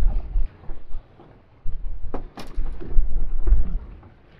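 Wind buffeting the microphone in gusts: a low rumble that comes and goes. Two sharp clicks come a little over two seconds in.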